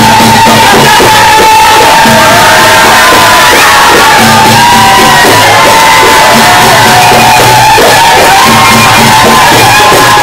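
Arab wedding zaffe music: a steady drum rhythm under a long, wavering held melody line, with a crowd shouting and cheering over it.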